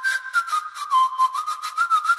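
Whistled melody, pitched up and sped up nightcore-style, over a beat of quick percussive ticks: the intro of a pop track.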